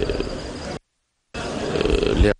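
A man's drawn-out hesitation sound, a held "euh". About 0.8 s in it cuts out to dead silence for about half a second, as at an edit, then his voice resumes on another held sound.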